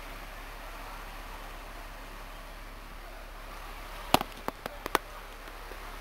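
Steady faint hiss of background, broken about four seconds in by a quick run of five or so sharp clicks and knocks within a second. The clicks are handling noise from the camera being moved.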